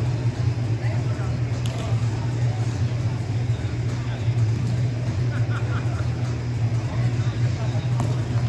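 Steady low hum in a large indoor sports hall, with indistinct voices of players in the background.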